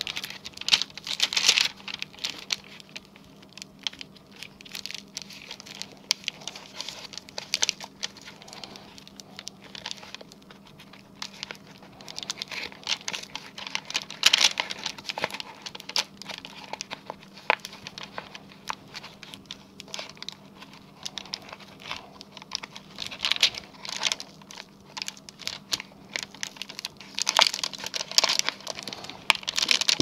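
Gloved fingers rubbing and pressing clear plastic transfer paper onto a cut vinyl stencil, with irregular crinkling and crackling of the plastic sheets. The rustling grows busier near the end.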